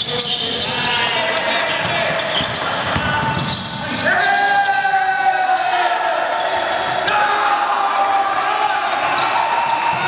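Basketball being dribbled and bounced on a hardwood gym court during play, with players' voices calling out across the court; a couple of long shouts come in the second half.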